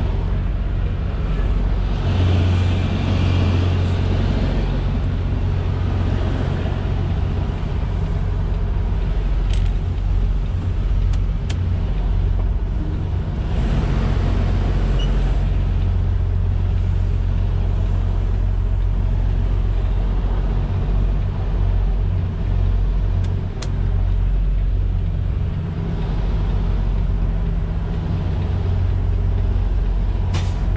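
Semi-truck tractor's diesel engine running steadily, heard from inside the cab as the tractor drives slowly through the yard without its trailer, with a few faint clicks.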